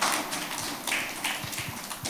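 A few soft taps over quiet room noise.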